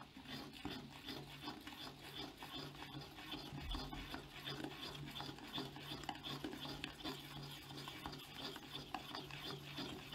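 A metal spoon stirring thin batter in a stainless steel pot, scraping and clicking against the pot's bottom and sides in quick, continuous strokes.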